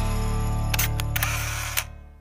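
A camera shutter clicks three times, in quick double clicks around the middle and once more near the end, over the held final chord of background music. The music fades out near the end.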